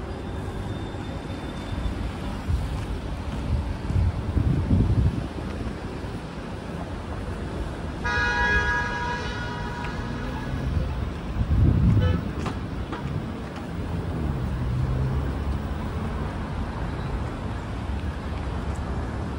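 Road traffic at a city intersection: cars and scooters going by, with a vehicle horn honking for about two seconds midway.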